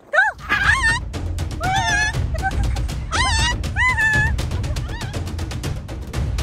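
Background music with a steady low drum beat comes in at the start. Over it, a hyacinth macaw gives several loud calls that rise and fall in pitch in the first few seconds, just after it is launched from the hand to fly.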